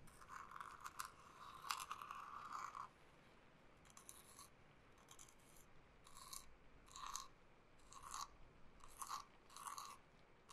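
Quiet scratchy rubbing of a fluffy-tipped stick worked in a small bowl: about three seconds of continuous scratching, then short separate strokes about once a second.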